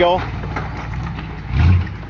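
Off-road vehicle's engine running low while it crawls over boulders, with a brief rev about one and a half seconds in.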